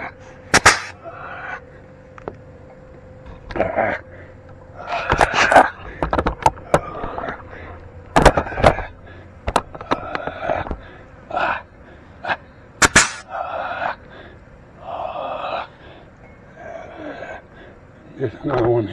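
Pneumatic grease gun on an air hose firing in short, separate bursts, each a spurt of hiss, with several sharp cracks among them, as it pumps grease into the tractor's front axle grease fittings.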